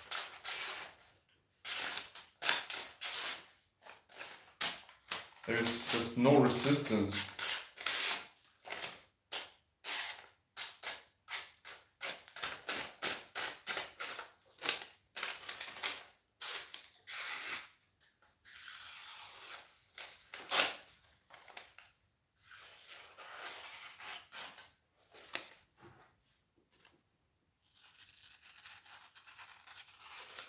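Freshly sharpened Mora 511 knife slicing through a sheet of paper in many short strokes, coming several a second in the middle and thinning out near the end; the clean cuts are a test of the edge's sharpness after sharpening and stropping.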